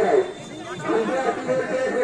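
Chatter of several men's voices talking over one another.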